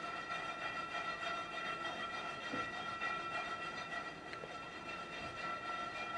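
A single steady high-pitched tone with overtones, held without change and cut off sharply near the end.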